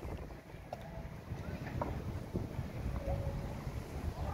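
Wind buffeting the microphone as a low, steady rumble, with a few faint, brief higher sounds in the distance.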